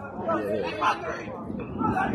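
Indistinct chatter of spectators' voices, words not clear, busiest in the first second.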